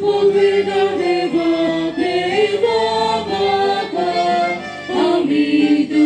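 Choir singing a hymn, voices holding long notes that step from one pitch to the next, with a brief pause for breath about five seconds in.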